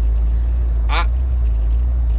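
Jeep Wrangler's engine running, a steady low drone heard from inside the cab.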